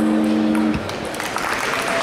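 An electric guitar's final chord ringing out, cut off sharply under a second in, then applause starting up and growing.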